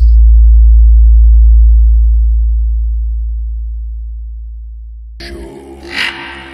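Deep, very loud sub-bass tone of a DJ 'vibration' remix, hitting suddenly and fading slowly over about five seconds. Near the end the fuller mix of the track comes back in.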